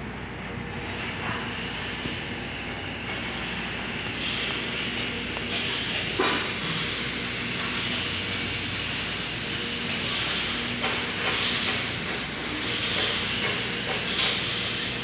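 Electric arc welding on a steel square-tube frame, sizzling steadily, with a low steady hum underneath.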